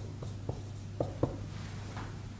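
Marker pen writing on a whiteboard: a handful of short strokes and taps of the tip, the two loudest about a second in, over a steady low hum.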